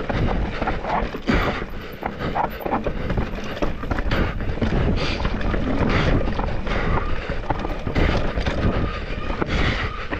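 Deviate Claymore enduro mountain bike descending a rocky, rooty dirt trail, heard from a camera on the rider: a steady rush of tyre noise and wind on the microphone, broken by frequent short knocks and rattles as the bike hits rocks and roots.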